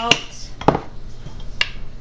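A few sharp clicks and knocks as salt and pepper jars are picked up, opened and set down on a kitchen countertop. The loudest knock comes just under a second in, with a lighter click near the end.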